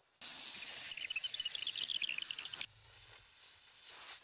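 Compressed air from an IPA Air Comb multi-port 90° blow gun hissing loudly as it blasts through a tube-style air filter from the inside, blowing the dust out. The blast starts just after the beginning, and a little past halfway it drops abruptly to a quieter, steady hiss.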